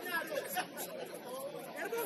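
Several people's voices talking and calling out over one another, indistinct chatter.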